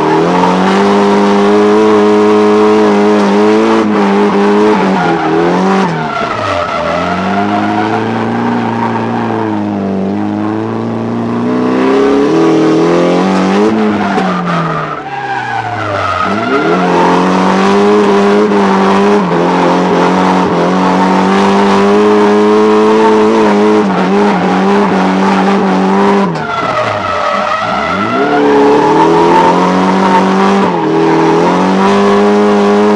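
Nissan Silvia S14's SR20 four-cylinder engine held at high revs while the car drifts, heard inside the cabin, with tyre squeal. The revs drop sharply and climb back three times.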